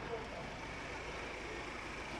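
Steady low hum of street traffic, with a faint thin high tone held through most of it.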